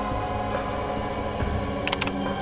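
Tense dramatic background score of sustained, droning tones, with a short sharp hit just before the end.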